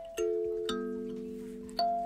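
Kalimba (thumb piano), its metal tines on a wooden board plucked one note at a time: three separate notes, each ringing on and overlapping the one before.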